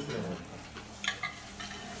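Someone chewing a crispy fried potato rösti, with soft crackly crunches and a brief sharp click about a second in.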